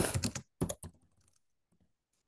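Typing on a computer keyboard: a quick run of keystrokes, then a few separate strokes and light taps that stop about a second and a half in.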